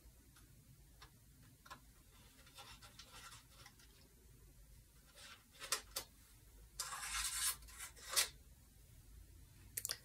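Faint scraping and small metal clicks of a screwdriver working the pivot-rod screw out of a saxophone's low C and E-flat keys, with a longer scrape about seven seconds in.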